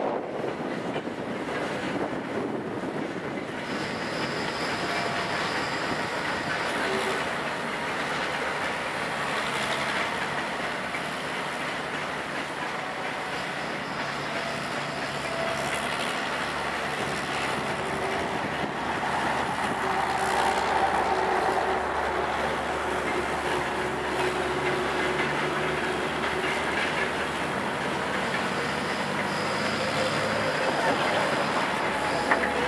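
Tatra 815 UDS-114 telescopic excavator working: its diesel engine runs steadily under hydraulic load, with a faint whine that comes and goes as the boom digs soil and swings to load the tipper.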